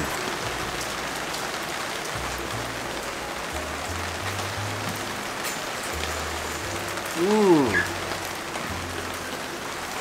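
Steady rain falling, heard as an even hiss of drops on a clear plastic umbrella held overhead.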